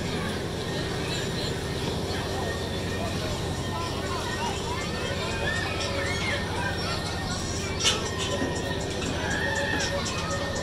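Outdoor fair ambience: overlapping voices and high children's shouts over a steady mechanical hum from the ride machinery, with a sharp click about eight seconds in.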